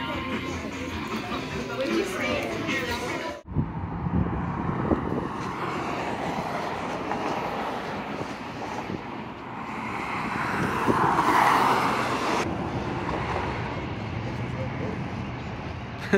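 Guitar background music for the first few seconds, then a sudden cut to open-air ambience: a steady wash of noise that swells to a rush about three-quarters of the way through and breaks off abruptly.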